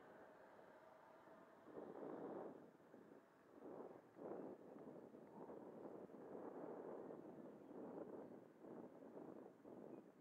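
Faint rushing roar of an 80mm electric ducted-fan RC jet (Xfly T-7A) flying at a distance. It comes in about two seconds in and then swells and fades in uneven waves.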